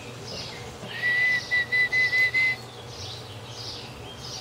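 A person whistling: one longer note about a second in, then a quick run of about five short notes at the same pitch, with faint bird chirps behind.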